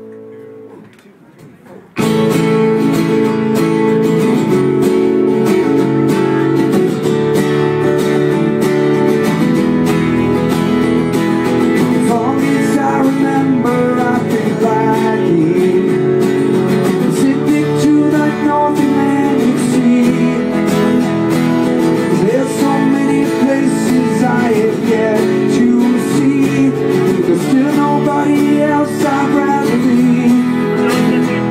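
Several acoustic guitars strumming chords together in a live acoustic band performance. The music drops almost to nothing for the first two seconds, then comes back in full and carries on steadily.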